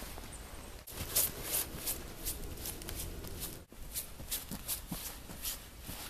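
Footsteps crunching in fresh snow, a quick series of crisp crackles about two or three a second, broken by two brief gaps.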